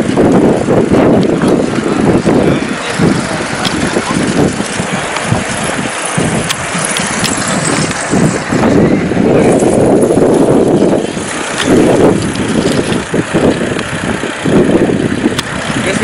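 Wind rumbling on the microphone and road noise from a camera moving along the road with a group of cyclists, with indistinct voices mixed in.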